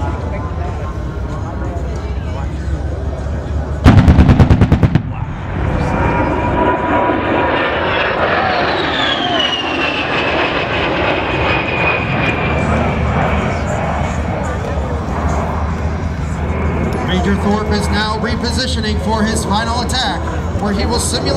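A loud, rapid burst lasting about a second, the simulated 30 mm cannon fire of a strafing pass. Then the Fairchild Republic A-10's twin General Electric TF34 turbofan engines pass overhead with a high whine that falls in pitch as the jet goes by.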